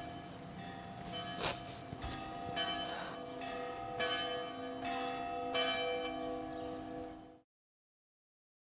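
A peal of large bells: several bells of different pitch struck roughly once a second, their tones ringing on and overlapping, cutting off suddenly near the end.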